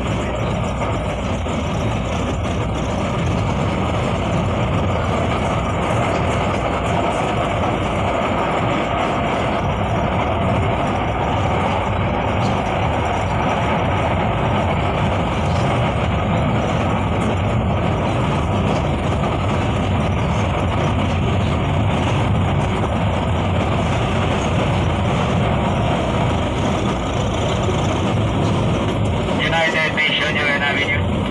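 Steady running noise of an LRT Line 1 light-rail train, heard from inside the passenger car as it travels along the elevated track.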